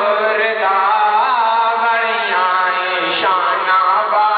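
A man's voice in devotional chanting, a long melodic line that bends up and down, over a steady low drone.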